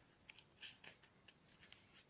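Faint, short crackles and ticks of paper as a comic magazine's pages are held and handled, about eight small clicks spread over two seconds.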